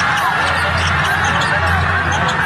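Basketball sneakers squeaking on a hardwood court amid arena crowd noise, over background music with a steady low bass.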